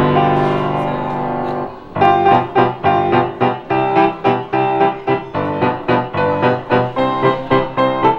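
Grand piano played by two people side by side: a chord held for about two seconds, then a steady run of repeated chords, about three a second.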